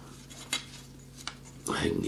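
Two light clicks from a small plastic model part being nudged with a toothpick against the cutting mat, the first sharp and the second fainter, over a low steady hum.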